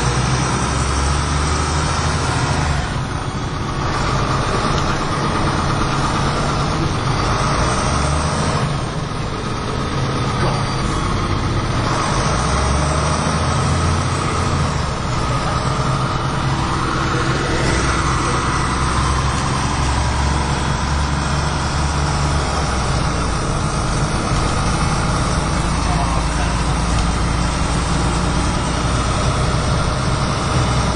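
MAN 18.220LF single-deck bus under way, heard from a seat inside: its diesel engine running with drivetrain and road noise. There are brief dips in loudness about 3 and 9 seconds in.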